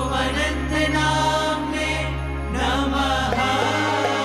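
Hindu devotional kirtan: male voices chanting a namavali line over harmonium and a steady low drone. The chant ends about three and a half seconds in, and hand-drum strokes carry on after it.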